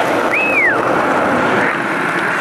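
Skateboard wheels rolling over pavement: a steady rolling noise, with one short squeak that rises and then falls in pitch about half a second in.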